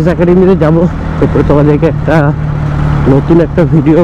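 A man talking over the steady low running of a Bajaj Pulsar NS200's single-cylinder engine at low speed.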